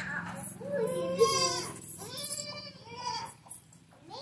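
A baby goat bleating twice, two drawn-out wavering calls about a second long each.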